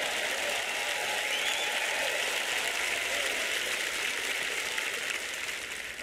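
Large audience applauding steadily, easing off slightly near the end.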